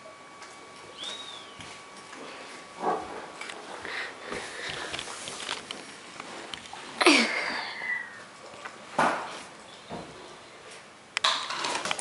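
A dog sniffing and snuffling as it noses a rubber Kong treat toy around a hard floor, with scattered knocks and scuffs of the toy. One louder sudden noise comes about seven seconds in.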